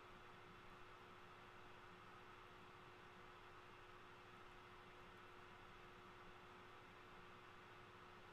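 Near silence: room tone, a faint steady hiss with a low steady hum.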